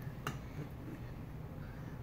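A single light click about a quarter second in as a glass jar of tomato sauce is picked up from the table, then low room noise.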